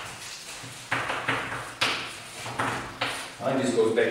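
Chalk writing on a blackboard: a run of short sharp scratching strokes and taps, several per second with brief gaps. Near the end a short voiced sound joins in.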